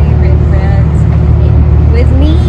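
Voices talking over a loud, steady low rumble of street background noise.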